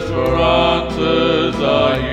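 A Christian song being sung, long notes held with a wavering vibrato over a steady low accompaniment.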